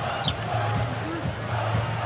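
Basketball arena game sound: crowd noise with music playing over the arena's PA, carrying a steady low bass tone, and faint voices.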